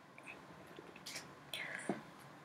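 Faint breaths and mouth noises of a man close to the microphone over a low hiss, with a short soft one about a second in and a longer intake of breath near the end.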